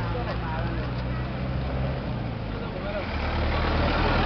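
A motor vehicle engine running with a steady low hum, with many voices chattering over it. The engine grows louder about three seconds in.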